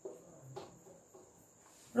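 Faint, steady, high-pitched chirring of crickets in the background, with a couple of soft taps of a marker on a whiteboard near the start and about half a second in.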